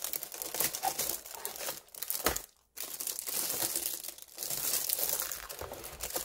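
Clear plastic wrapping on a new keyboard crinkling as the keyboard is handled and lifted out of its cardboard box. A single sharp knock comes a little over two seconds in, followed by a brief pause, then more crinkling.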